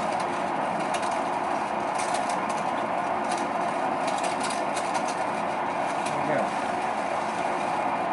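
Electric potter's wheel running steadily at speed: a constant motor hum with a faint steady tone, and light scattered clicks.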